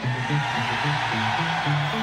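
Live rock band playing: a bass line of short, repeated notes under a steady wash of distorted guitar.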